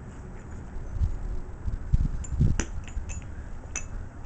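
Handling noise from steel connecting rods and aluminium pistons being picked up and moved on a concrete floor: a few low bumps and scrapes, with two or three short metallic clicks in the second half.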